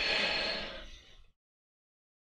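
A man taking a quick sip of a drink: a breathy slurp that lasts just over a second and fades out.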